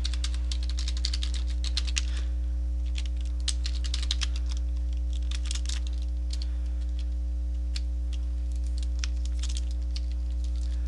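Computer keyboard being typed on: irregular runs of key clicks. A steady low hum runs underneath.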